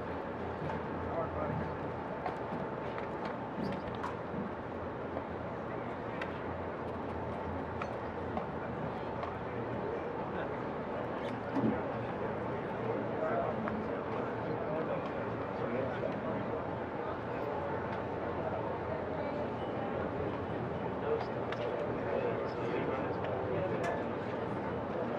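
A large aircraft flying over: a steady drone of engine noise with a faint held whine, under murmured voices.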